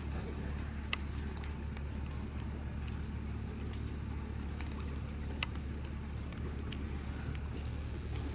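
A steady low rumble with scattered sharp clicks, the loudest about a second in and another about five and a half seconds in.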